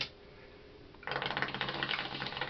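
Water in a bong bubbling in a rapid, steady rattle as smoke is drawn through it, starting about a second in.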